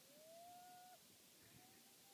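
A faint pitched call that rises and then holds for about a second, followed by a fainter, shorter one.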